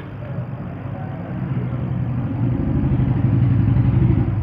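A motor vehicle's engine running with a steady low rumble, growing louder over the second half.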